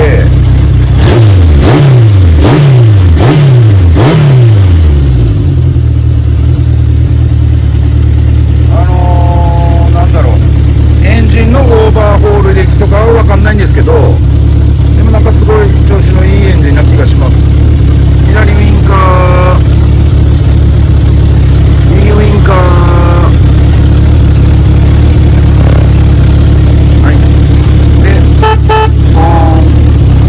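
Honda CB750K4's air-cooled inline-four engine blipped several times in quick succession about a second in, then settling to a steady idle around 1,000 rpm.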